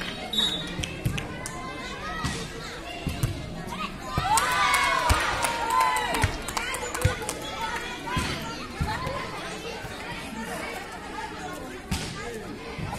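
A volleyball being struck again and again in play, sharp slaps and thuds as players hit it, with girls' voices shouting and calling out. About four seconds in, a burst of many voices shouting together lasts around two seconds.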